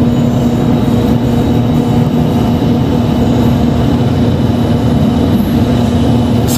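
Churros extruding machine running with its dough feed on: a steady motor hum as the screw augers push the dough toward the forming head.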